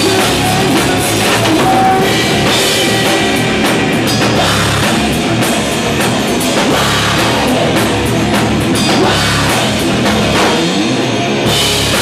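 Live rock band playing loud: electric guitar, bass guitar and drum kit.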